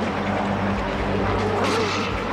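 A truck engine running steadily as it is driven, with a low hum under a broad, even road noise.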